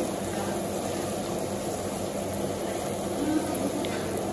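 Sliced fennel and orange pieces frying in a pan while being stirred with a metal spoon, a steady sizzle over a low, even kitchen hum.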